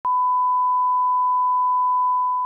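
1 kHz line-up test tone that accompanies broadcast colour bars: a single steady, unwavering beep at one pitch, switching on with a brief click right at the start.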